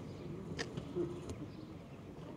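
Faint, indistinct murmur of voices, with two light clicks about half a second and just over a second in.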